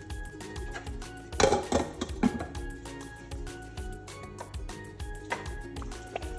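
Soft background music with a few metallic clinks of a spoon against a steel cooking pot, the loudest about a second and a half in and again near the end.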